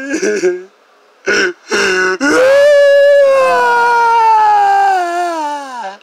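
A person crying: a short falling cry, a brief pause, two quick sobs, then one long, high wail that sinks in pitch before breaking off near the end.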